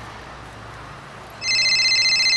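An electronic telephone ring cuts in about one and a half seconds in: a loud, fast-trilling tone of several steady pitches at once. Before it there is only a low steady background hum.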